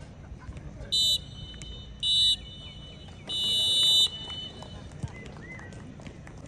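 Referee's whistle blown three times: two short blasts and then a long one, shrill and high-pitched. This is the full-time whistle ending the match.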